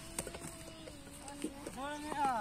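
Children calling across the open field: one long, drawn-out call held for over a second, then more shouting near the end. Two sharp knocks sound, one just after the start and one near the middle.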